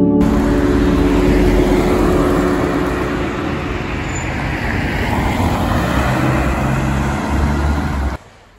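Road traffic on a city street: a steady rush of passing cars' tyres and engines. It dips a little in the middle and swells again toward the end, then cuts off abruptly.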